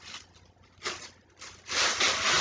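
Thin plastic bag rustling as a dyed shirt is pushed into it: two brief crinkles, then steadier, louder crinkling near the end.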